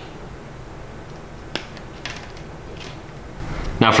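Small flush cutters snipping through thin servo wire: one sharp snip about a second and a half in, and a fainter click near three seconds.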